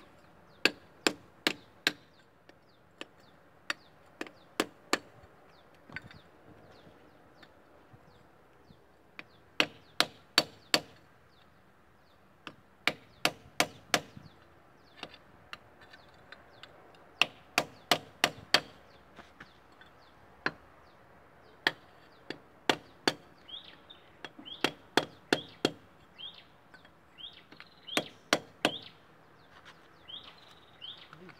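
Hammer blows on a steel drift bar held against an excavator final drive bearing, knocking the bearing out of its housing. Sharp metallic strikes come in bursts of two to six blows, with pauses of a second or more between bursts.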